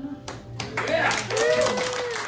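The last sung note of an unaccompanied-style folk chorus stops at the start, and about a third of a second in an audience breaks into applause, with voices calling out over the clapping.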